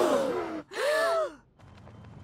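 A crowd of cartoon onlookers gasping in surprise together, many voices overlapping in a drawn-out gasp, followed about a second in by one short, hesitant 'uh' from a single voice.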